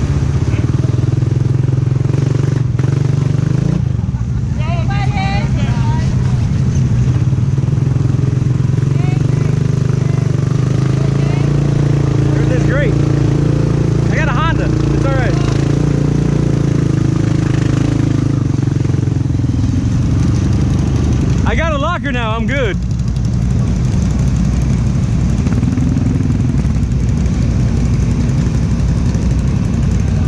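Honda Rubicon ATV's single-cylinder engine running steadily close to the microphone, a loud low hum that holds the same pitch. A few short shouted voices break in over it, the loudest about two-thirds of the way through.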